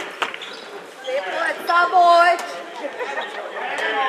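Men shouting and calling out across an indoor handball court during play, one call held for about half a second near the middle, with a few sharp knocks from the ball and feet, echoing in the large hall.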